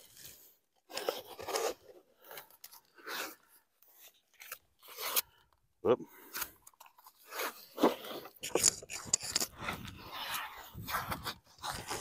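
Blue painter's tape being pulled off the roll and wrapped around a body-armor panel on a plastic water jug: short, irregular tearing and crinkling sounds, with plastic rustling.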